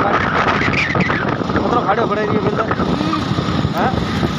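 A motorcycle being ridden along a road, heard from the rider's seat: steady engine and road noise with wind rushing over the microphone.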